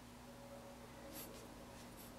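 Faint scratching of a thin metal sculpting tool working modeling clay: a few short scrapes about a second in, over a low steady hum.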